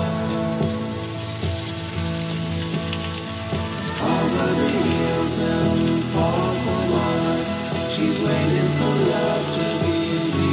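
Blue marlin steaks sizzling on a hot grill pan as they are laid on, a steady crackling hiss. Background music with sustained notes plays over it, louder from about four seconds in.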